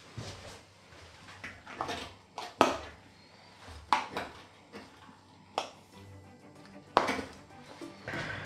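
Metal pie server cutting through a crisp baked pastry crust and knocking against an enamel pie dish: a string of sharp crunches and clicks, the sharpest about two and a half, four and seven seconds in. Quiet background music underneath.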